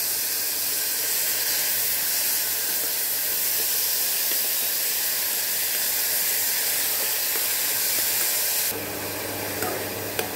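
Grated radish sizzling in hot ghee in an aluminium kadai, a steady hiss as its moisture steams off. Near the end the hiss drops and a spatula begins to scrape and stir.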